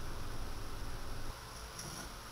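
Faint, steady background noise with no distinct events, dropping a little in level about a second in.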